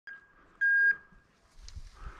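An electronic beep: a short blip, then about half a second in a louder single steady high tone lasting about a third of a second.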